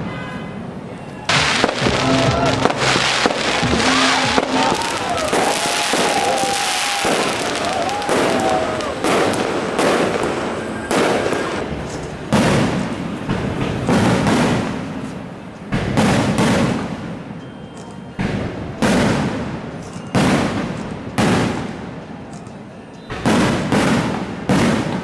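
Aerial firework shells bursting: a dense barrage of bangs for several seconds, then single loud bangs about once a second or so.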